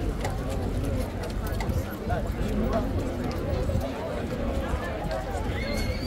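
Indistinct chatter of a group of men talking at once, with a few sharp clicks scattered through it.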